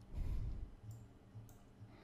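A few faint computer mouse clicks over a low hum.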